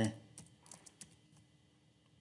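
Computer keyboard typing: a few faint key clicks in the first second or so.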